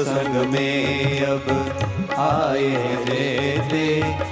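Indian devotional music: a voice singing a slow, wavering melody over steady sustained drone and bass tones.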